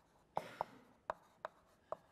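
Five sharp, light clicks or taps, irregularly spaced about a third to half a second apart, the first with a brief scratch after it.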